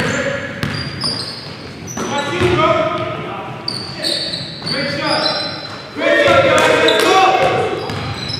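Basketball dribbled on a hardwood gym floor, with short high sneaker squeaks and players calling out, echoing in a large gym. The voices grow loudest about six seconds in.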